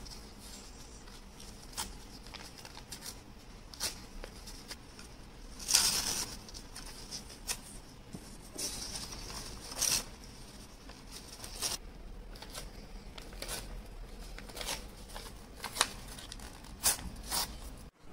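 Sheets of coloured paper being torn into small pieces by hand: a series of short rips with paper rustling between them. The longest, loudest rip comes about six seconds in, and another about ten seconds in.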